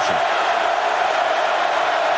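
Steady noise of a large football stadium crowd, heard through a television broadcast.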